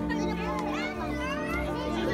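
Children's high voices chattering and calling out over music with sustained notes and a steady bass line.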